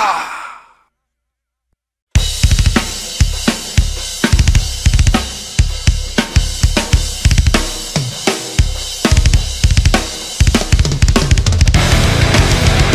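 The last notes of a heavy metal track die away within the first second, then a short silence. About two seconds in, a drum kit intro starts alone: kick drum, snare and cymbals playing a driving beat, with the band thickening the sound near the end.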